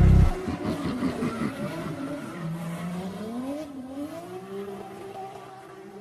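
A phonk track's beat cuts off, leaving a car sound effect: an engine whose pitch rises and falls, tagged as tyre squeal, fading out over several seconds.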